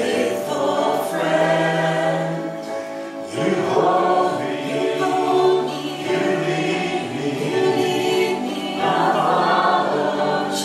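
Small worship band singing a slow worship song: women's and a man's voices together in held phrases, with acoustic guitar accompaniment.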